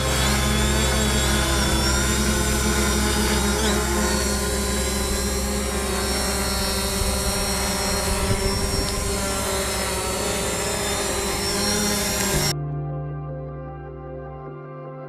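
Fimi X8 SE 2020 quadcopter hovering low, its motors and propellers giving a steady hum with several tones at once. It stops abruptly near the end and is replaced by soft ambient music.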